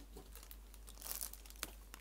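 Cellophane shrink-wrap crinkling as it is peeled off a boxed tarot card deck, in short scattered crackles with a sharper click near the end.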